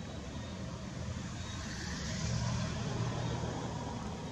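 A motor vehicle passing nearby: a low engine and road rumble that swells about halfway through.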